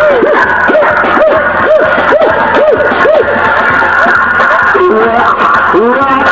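Loud party music with a crowd of people shouting and singing along. A run of short rising-and-falling notes repeats about twice a second through the first half.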